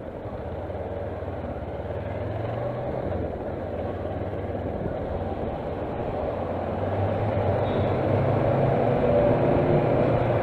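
Kawasaki Versys motorcycle engine running as the bike rides along, heard from the rider's seat over road and wind noise; the engine note dips briefly about three seconds in, then rises and grows louder through the second half.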